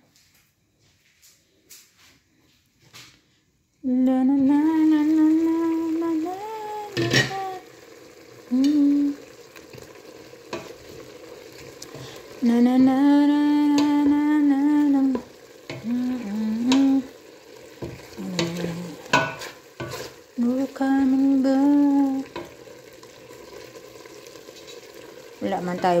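Chicken pieces sizzling in their own juices in a stainless steel pot, stirred with a wooden spoon. After a near-silent start, from about four seconds in, a voice hums a tune in long held notes that are louder than the cooking.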